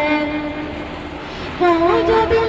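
A boy's voice singing an Urdu naat: a long held note that slowly fades, then a louder new phrase breaks in near the end with the pitch bending up.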